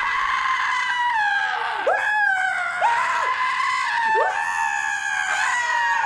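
A man screaming in fright, a high shrill scream broken off and started again about five times in a row, each one opening with a quick rise in pitch.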